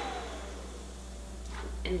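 Quiet room tone with a steady low hum. A faint tone slides down and fades out in the first second.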